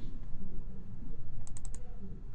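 Computer keyboard keystrokes: a quick run of four clicks about one and a half seconds in, over a steady low hum.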